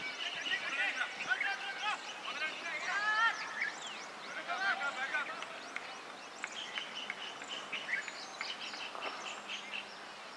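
Outdoor ambience of birds chirping and calling, with faint distant voices; the calls thin out after about six seconds into a quicker, fainter high chatter.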